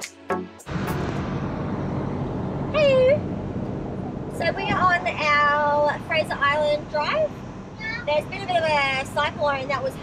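Music cuts off under a second in, giving way to the steady drone of a truck's engine and tyres heard from inside the cab while driving. Over it come several high-pitched, drawn-out vocal sounds, the loudest about three and five seconds in.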